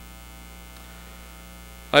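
Steady electrical mains hum with a stack of faint buzzy overtones, holding at an even level. A man's voice starts again right at the end.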